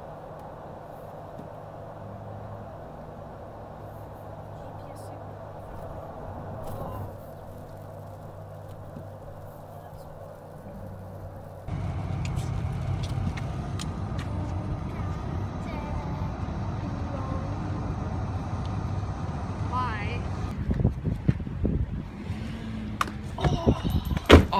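Road noise inside a moving car: a steady engine and tyre hum at first, then, from about halfway, a louder rumble of tyres on a wet highway.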